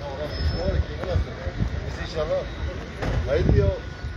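Voices of people talking, too faint or distant to make out, in short stretches over a steady low rumble.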